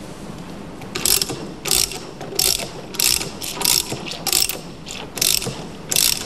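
Ratchet wrench clicking in about ten short bursts, starting about a second in, as it turns the thrust spindle of a resetting device on a hydraulic bolt-tensioning jack. The turning pushes the jack's piston back to its home position.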